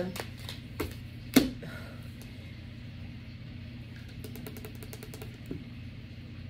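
A deck of tarot cards being shuffled and handled: light card flicks and taps, with a sharper snap about a second and a half in and a quick run of flicks between four and five and a half seconds in, over a steady low hum.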